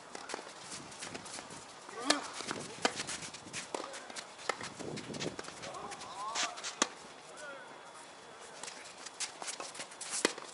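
Tennis rally in a doubles match: sharp pops of rackets striking the ball and the ball bouncing on the court, at irregular intervals, with players' footsteps and short shouts between shots.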